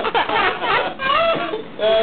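A toddler's high-pitched squeals and excited vocal sounds, rising and falling in pitch, with a brief pause just before the end.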